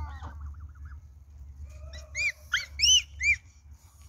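Canada geese honking: a quick run of about five loud honks, each rising and falling in pitch, close together from about two seconds in.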